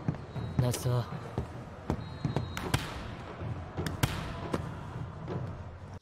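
Volleyball anime soundtrack at low level: a steady arena crowd noise broken by a few sharp thuds and knocks, with brief faint dialogue about half a second in.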